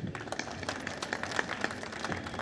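Light, scattered applause from an audience: many irregular hand claps with no steady rhythm.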